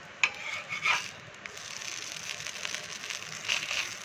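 Pesarattu batter sizzling steadily on a flat griddle (tawa). A metal spatula scrapes and clicks against the pan a few times in the first second, and again near the end as it slides under the dosa.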